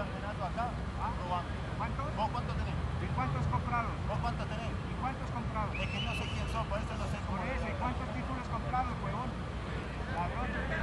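Men's voices talking back and forth at a distance, over a steady low rumble.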